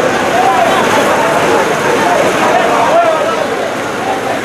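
Many people's voices overlapping in calls and shouts over a dense, steady rushing noise.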